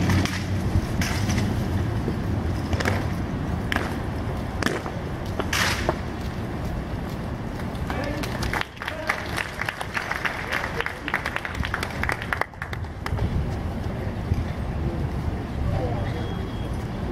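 Rifles being slapped, caught and struck by hand during army drill team rifle drill: a string of sharp, separate clacks, then a fast run of clatters about halfway through. Under it runs a low crowd murmur.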